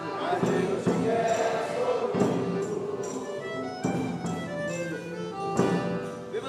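Congado music: a Todeschini accordion playing a sustained melody and chords with men's voices singing, over a steady beat of percussion strokes.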